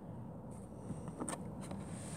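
A cardboard box being handled as it is opened: hands sliding and pressing on the cardboard, with a few faint light clicks about a second in.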